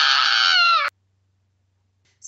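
A toddler's loud wailing cry, one long high-pitched note that sags slightly in pitch and cuts off suddenly about a second in.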